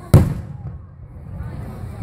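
An aerial firework shell bursting: one sharp, loud boom just after the start, dying away within about half a second.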